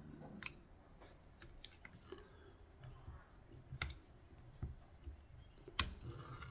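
Faint, scattered small clicks and ticks of a wire whip-finish tool and tying thread being worked at a fly-tying vise as the head of the fly is whip-finished. There are about seven sharp clicks at uneven intervals, the loudest near the end.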